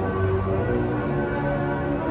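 Carousel music playing: a tune of held notes that change pitch, over a steady low tone.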